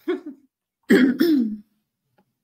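A person clearing their throat: a short burst at the start, then a louder, longer voiced one about a second in.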